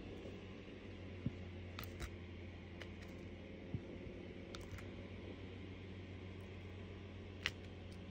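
A handful of light clicks at irregular intervals: a diamond-painting drill pen picking square drills from a plastic tray and pressing them onto the canvas, over a steady low hum.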